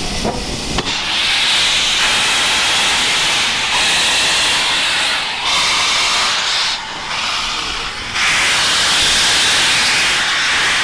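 Steam hissing loudly from the open cylinder drain cocks of the A1 Pacific steam locomotive 60163 Tornado, dropping away briefly a few times and cutting out for over a second in the latter half.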